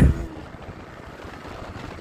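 Steady wind and riding noise on a moving Yamaha R15 V4 sport motorcycle at about 55 km/h.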